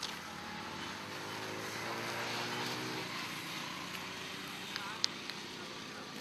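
A motor vehicle passes by out of sight: its engine hum and road noise swell to their loudest about two to three seconds in, then fade. There is a sharp click about five seconds in.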